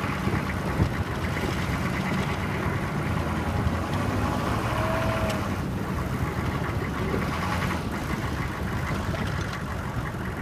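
GMC Sierra 2500 plow truck's engine running steadily at low speed in first gear, with the hiss of the Meyer plow blade pushing ice-pellet snow along the driveway.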